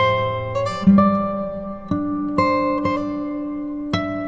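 Background music of plucked guitar notes, each ringing out and fading, a new note about every half second to a second.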